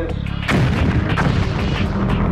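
Gunfire: a sharp shot about half a second in, then further shorter cracks, over a low steady music bed.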